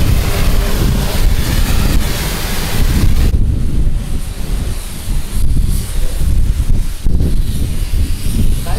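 Wind buffeting the microphone with a loud, uneven rumble, and for the first three seconds or so the hiss of a car-wash high-pressure lance spraying water onto a car.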